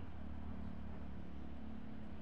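A steady low hum, like a distant engine drone.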